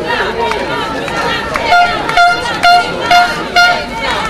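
A horn sounds five short, even toots, about two a second, starting a little under two seconds in, over the chatter of a walking crowd.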